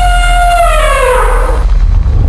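Intro music ending on a loud held note over a deep bass, the note sliding down in pitch in its second half.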